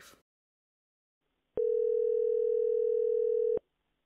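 One ring of a telephone ringback tone over a phone line: a single steady tone near 450 Hz, held for about two seconds starting about a second and a half in, as the automated survey call is placed.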